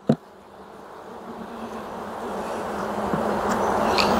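Honeybees humming over an open hive box, the hum growing steadily louder, with a single short click at the very start.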